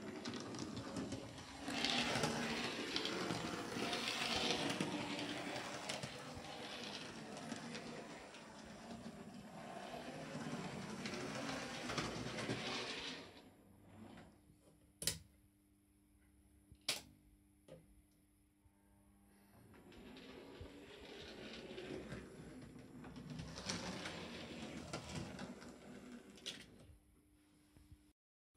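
Model railway locomotive running along the track, a faint whir of its small electric motor and wheels. It stops for several seconds around the middle, with two sharp clicks in the pause, then runs again.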